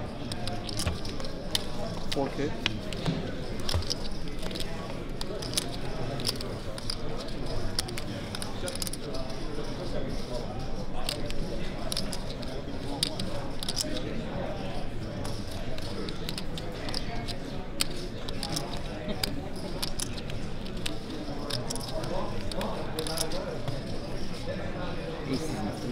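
Poker chips clicking together in short, irregular bursts as players handle and stack them at the table, over a steady murmur of many voices in a large room.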